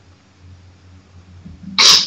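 A person's single short cough, loud and sudden near the end, over a low steady hum.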